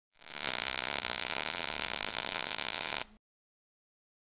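Intro sound effect: a steady, dense hiss with a faint steady tone underneath, lasting about three seconds and cutting off suddenly.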